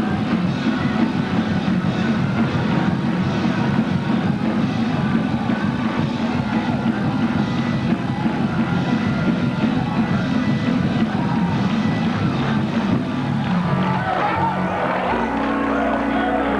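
Gospel praise break: fast, loud church band music driven by a drum kit. Near the end the beat drops away into held chords.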